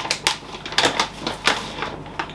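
Crinkling and rustling of a large plastic protein-powder pouch as a scoop is dug into the powder and lifted out: a run of sharp, irregular crackles.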